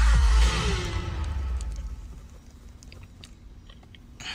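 Film-trailer music with heavy bass and a falling tone, played on a car's touchscreen head unit, fading out over about the first second and a half. A low background with a few faint clicks follows.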